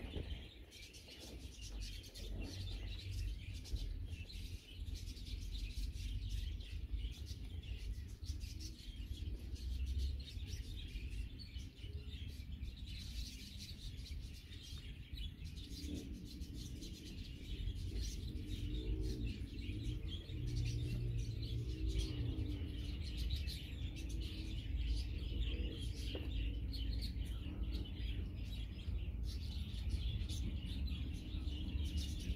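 Small birds chirping and twittering over and over, with a steady low rumble underneath.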